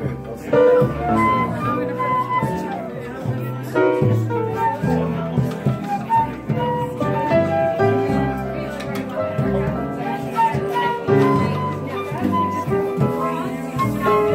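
Small acoustic jam band playing a tune, a flute carrying the melody over upright bass, guitar and fiddle.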